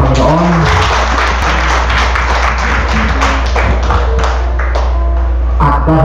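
A crowd applauding: a dense run of claps that swells after about a second and dies away shortly before the end, over a steady low hum. A voice trails off at the very start, and a voice begins again near the end.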